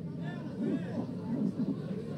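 Indistinct voices of several people talking over one another: background chatter with no single clear speaker.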